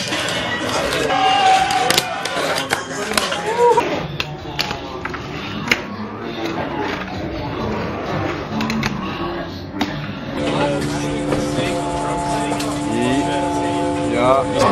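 Overlapping voices of people talking in a busy room, with a few sharp clicks. About ten seconds in, music with held guitar notes comes in and carries on.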